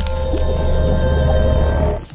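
Logo intro sting: music with a deep, steady bass drone under a splashing ink-blot sound effect, dropping away at the end.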